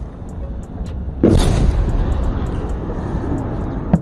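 A distant explosion: a sudden loud boom about a second in that rumbles away over the next couple of seconds, over a steady low rumble, with a short sharp crack near the end.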